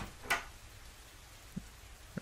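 A sharp tap about a third of a second in, then a faint steady hiss of background ambience, with a small soft knock near the end.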